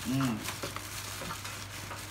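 Light eating and handling noises: chopsticks clicking and scraping against a metal pot and bowls while a plastic bag crinkles. A short two-part voice sound comes right at the start.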